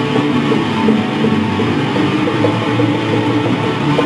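An instrumental rock jam, with guitars playing over a steady, loud band sound.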